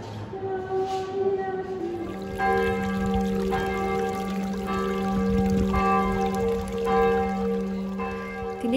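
Church bells ringing, a fresh strike roughly every second from about two seconds in, each one's tones ringing on into the next.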